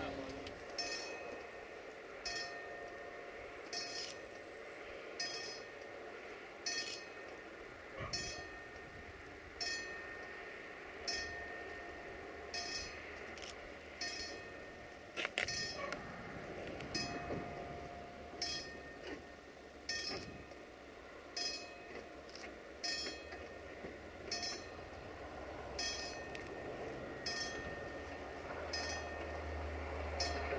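Level-crossing warning bell ringing, one strike about every second, warning of an approaching train.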